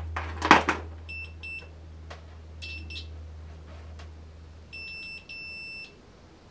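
UNI-T UT60A digital multimeter's continuity beeper sounding in short high beeps (two quick ones, one a little later, then two longer ones near the end) as the test probes make electrical contact through the e-textile swatch. A rustle and clatter about half a second in as the test leads are picked up, with a steady low hum underneath.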